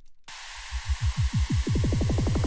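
Drum and bass build-up playing back from the producer's own FL Studio project. A white-noise riser cuts in suddenly, with a roll of pitch-dropping low hits that speeds up. An Endless Smile reverb and low-cut effect is automated to rise over it.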